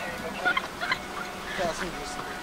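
A woman giggling in several short bursts.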